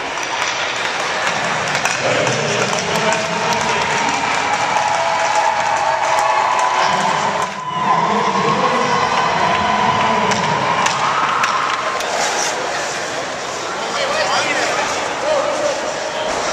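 Hockey arena crowd: many voices chattering and cheering together, echoing in the rink.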